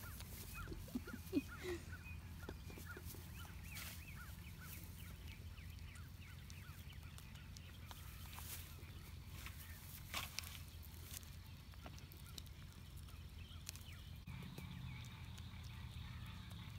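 Farmyard poultry calling over and over in the background, the calls coming thickest in the first few seconds, under a steady low rumble. A sharp knock comes about a second and a half in, and a short burst of noise near ten seconds.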